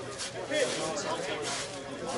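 Indistinct men's voices talking near the microphone; no other clear sound stands out.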